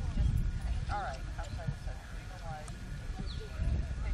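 Indistinct voices talking at a distance, over a steady low rumble.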